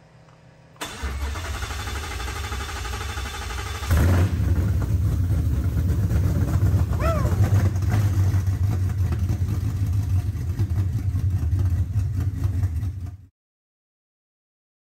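A Ford Coyote 5.0 V8 on its first start-up after the swap. The starter cranks for about three seconds, then the engine catches with a sudden louder burst about four seconds in. It settles into a steady, loud low-pitched run, which stops abruptly near the end.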